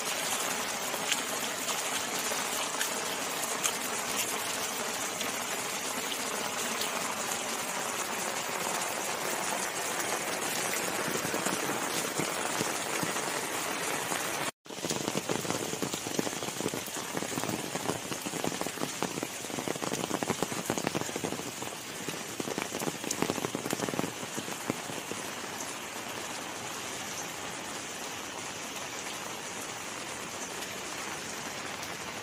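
Steady rain falling on wet stone paving. It cuts out for a moment about halfway, then spatters more unevenly with sharper drops for several seconds before settling back to a steady patter.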